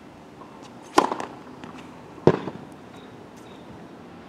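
Tennis serve: the racket strikes the ball with a sharp pop about a second in. A second sharp pop of about the same loudness follows just over a second later.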